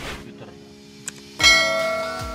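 A click and then a bell-like chime about a second and a half in, the sound effect of an on-screen subscribe-button animation, ringing on over background music.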